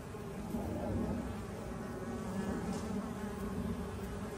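Many mason bees buzzing in flight around their wooden nesting blocks, a steady overlapping hum.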